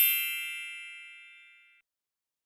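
A bright chime, likely an added sound effect, rings out with several high tones and fades steadily, dying away a little before the end.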